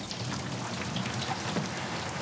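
A shower running: a steady hiss of water spray falling in a shower stall.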